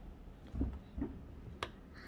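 Quiet handling of a small plastic toy dog figurine: a couple of soft bumps, then one sharp click near the end as it is brought against the cardboard box.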